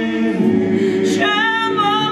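Several voices sing in close harmony, holding a chord, and a higher voice comes in over them about a second in.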